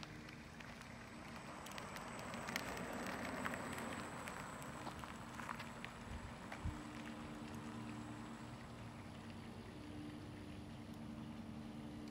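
Faint outdoor background noise: a low steady hum under a light crackling hiss, with a few small clicks.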